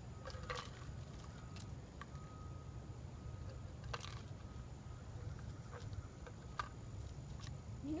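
Faint, scattered clicks and small knocks from a small plastic geocache container being handled and opened by hand, over a low, steady background rumble.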